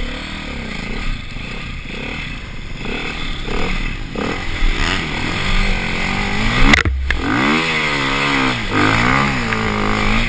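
Off-road motorcycle engine revving up and down over and over as it is ridden over rough ground, with a sharp knock about seven seconds in, after which the revving is at its strongest.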